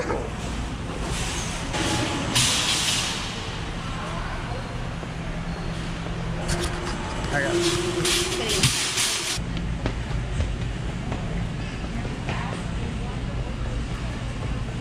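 Supermarket ambience: a steady low hum with indistinct background voices. A metal shopping cart rattles as it is taken from the nested row and pushed, loudest a couple of seconds in and again around the middle.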